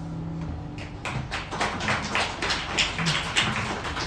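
The final chord on acoustic guitars rings out and stops about half a second in, then a small audience starts clapping about a second in, the individual claps distinct and growing louder.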